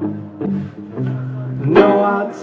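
Live rock band mid-song: electric guitar and bass guitar holding low notes that change a couple of times, then a voice and the full band come in loudly near the end.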